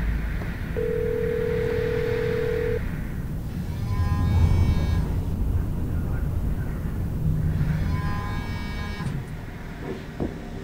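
Film score and sound design: a low rumbling drone with a single held tone early on, then two bright ringing notes about four seconds apart.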